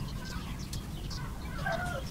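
A bird calling a few times in the background, short wavering calls that grow stronger near the end, over a steady low hum.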